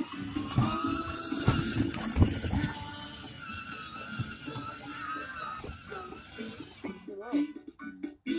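A children's song with a sung melody playing from a ride-on toy car's built-in speaker, with a few low thumps about two seconds in.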